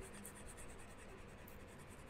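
Near silence: faint room tone with a slight hiss.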